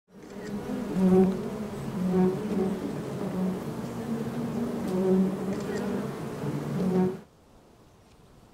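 Many honeybees buzzing around an open hive frame: a loud, dense hum of overlapping wingbeats that swells and fades as individual bees pass close. It stops suddenly shortly before the end.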